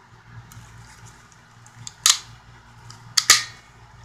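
Sharp metallic clicks from steel locking pliers being handled over a metal toolbox: one about two seconds in, then a quick double click just past three seconds.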